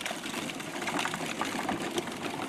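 Wheels of a child's pedal tractor and the towed cannon carriage rolling over a dirt yard, a steady crackle of small clicks and rattles.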